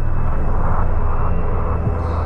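A loud, steady low rumble with a noisy haze above it and no clear tune.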